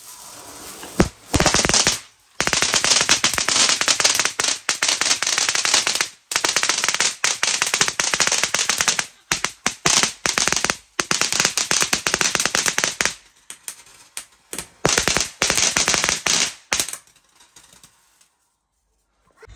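A row of small ground fireworks going off: a sharp crack about a second in, then long runs of dense, rapid crackling broken by short gaps, thinning out near the end.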